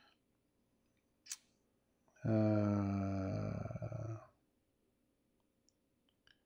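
A man's drawn-out wordless vocal sound, a low 'uhhh' or hum held at one steady pitch for about two seconds, a little over two seconds in. A single short click comes just before it.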